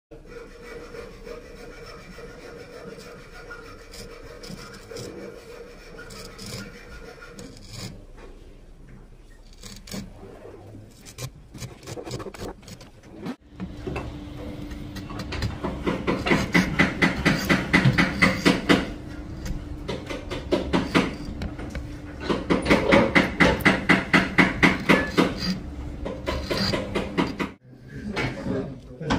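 Lie-Nielsen router plane paring a wooden tenon. After a quieter stretch of handling with scattered clicks, the blade cuts in two runs of rapid, loud scraping strokes, several a second, one starting about halfway in and one near the end.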